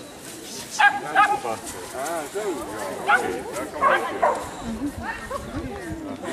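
A dog barks twice in quick succession about a second in, over people talking.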